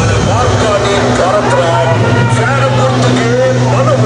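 Voices calling out over the steady low hum of an idling vehicle engine.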